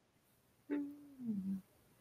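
A woman's short, soft 'hmm' hum, falling in pitch and broken into two parts.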